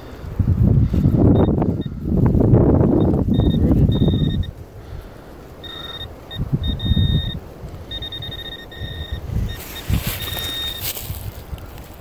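A handheld metal-detecting pinpointer beeps with a steady high tone in short on-off stretches as it is worked through the soil of a dug hole, signalling a metal target close to its tip. Rough scraping and rustling of dirt and pine needles being dug by hand is loudest in the first four seconds.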